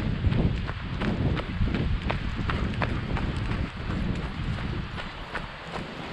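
Footsteps on a dirt woodland path, with crunches and small cracks about twice a second, over a low rumble of wind or handling on the microphone.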